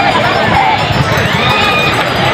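Beach crowd: people's and children's voices calling out over a steady rushing noise of surf breaking on the shore.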